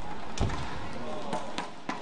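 Badminton rally: one loud, sharp hit about half a second in, then a few lighter sharp hits or footfalls on the court over steady hall murmur and voices.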